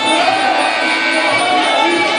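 Live sarama Muay Thai fight music: a pi java (Thai oboe) plays a wavering, bending melody over the ringside ensemble.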